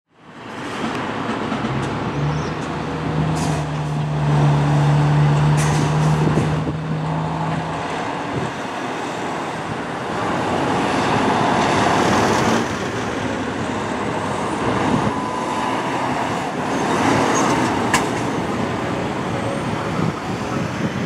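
Fire engine responding through traffic: a long, steady, low air-horn blast lasting several seconds near the start, then the truck's engine and passing road traffic.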